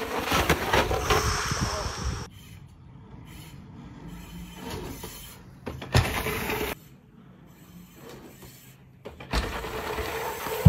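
Mountain bike riding down a dirt trail: rough tyre and rolling noise over loose dirt, loudest in the first two seconds. There is a sharp knock about six seconds in, and the sound changes abruptly a few times.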